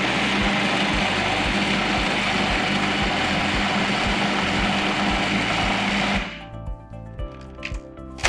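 Electric food processor running steadily at speed, grinding soaked almonds into a paste, with a constant motor hum under the chopping noise. It switches off about six seconds in.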